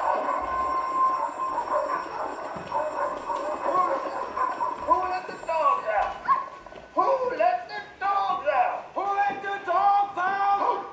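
A voice making wordless or unclear sounds. The sound is fairly continuous at first, then from about halfway through breaks into short syllables that slide up and down in pitch.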